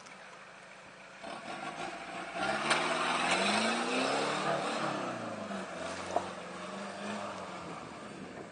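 Opel Frontera 2.3 turbodiesel SUV driving past slowly over a rough dirt track. The engine grows loudest about three seconds in, then its pitch drops and it fades as the vehicle moves away, with tyre noise on the loose ground and a single knock about six seconds in.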